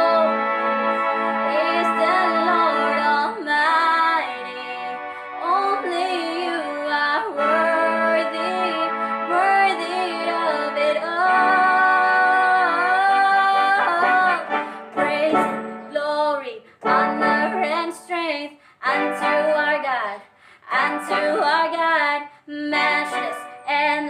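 A young woman singing with a Yamaha PSR electronic keyboard accompanying her. The first half is one continuous sung line over held keyboard notes; from about two-thirds of the way in, the music breaks into short phrases with brief gaps.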